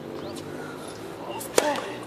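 A tennis racket striking a ball once, sharply, about one and a half seconds in, over faint background voices.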